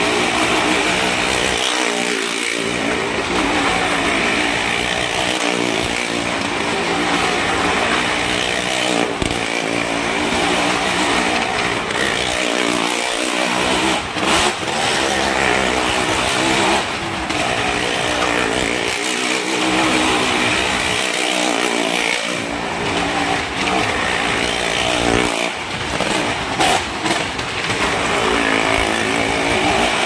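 A car engine and a motorcycle engine running hard as they circle the wooden wall of a well-of-death drum. It is a loud, continuous engine din whose pitch rises and falls as the riders work the throttle.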